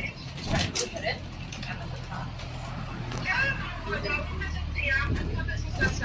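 City bus engine running with a steady low hum, heard from inside the passenger cabin, growing louder from about four seconds in. A few sharp knocks or rattles come about half a second in, and people talk in the background in the second half.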